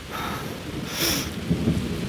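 Rain falling, with a low rumble underneath and a brief louder hiss about a second in.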